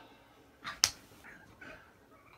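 A single sharp click, like a snap, a little under a second in, just after a brief rush of noise.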